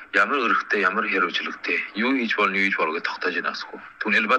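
Speech only: a single voice talking continuously with only brief pauses, as in a read news report.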